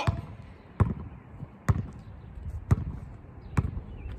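A basketball bouncing on an asphalt court as a player dribbles slowly: four hard bounces about a second apart.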